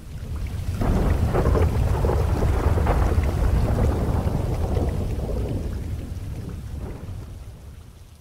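A long roll of thunder over rain, swelling up in the first second and slowly dying away over several seconds.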